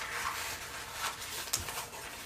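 Large metal shears cutting through a sheet of paper: a soft rustle of paper with a couple of faint snips.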